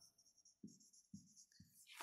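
Near silence with three faint, soft taps about half a second apart: a marker being written on a whiteboard.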